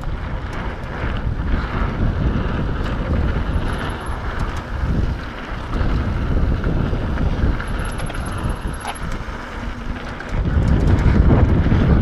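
Wind buffeting the microphone of a mountain biker's camera at speed, over the rumble of knobby tyres rolling on a dirt trail and scattered small clicks and rattles from the bike; it grows louder near the end.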